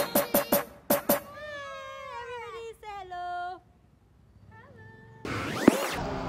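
A cat meowing: one long meow falling in pitch, then a short faint mew about a second later. A few beats of electronic music end just before it, and a rushing sound starts near the end.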